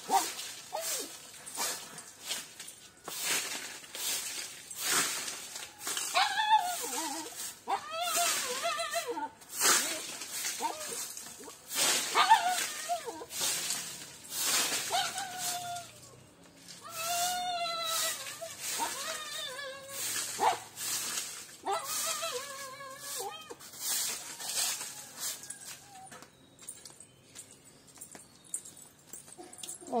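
Short hand broom sweeping dry leaves across interlocking paver tiles, a run of quick scratchy strokes, with pitched, voice-like calls coming and going between them.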